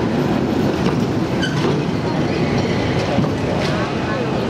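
San Francisco cable car turning on the Powell and Market turntable: a steady rumble of the car and its rail gear, with crowd voices in the background.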